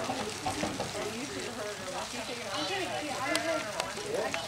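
Indistinct chatter of several people's voices, over a crackling hiss, with a couple of sharp clicks in the second half.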